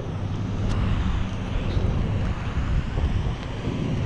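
Wind buffeting the microphone of a camera carried aloft on a parasail: a continuous low rumble that rises and falls.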